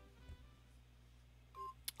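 Near silence with faint background music, and a short single beep near the end.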